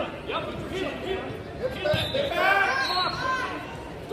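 Voices of coaches and spectators shouting and talking in a large gym, with a loud raised voice from about halfway through. A single low thump comes just before it.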